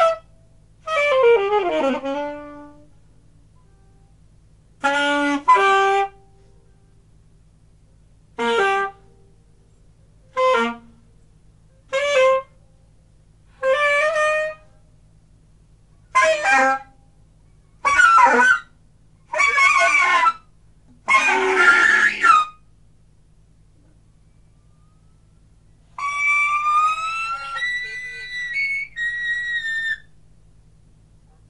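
Solo alto saxophone free improvisation: short separate phrases broken by pauses, one sliding steeply down in pitch near the start, ending on a longer high wavering line. A faint steady low hum sits under it.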